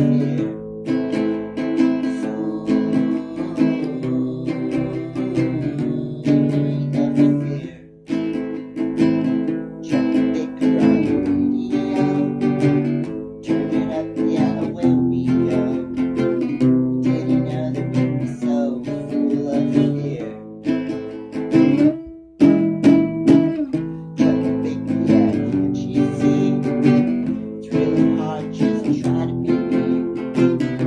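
Music: chords strummed on a plucked string instrument, stopping briefly twice.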